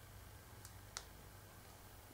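Near silence: quiet room tone with a faint low hum, and one short faint click about a second in.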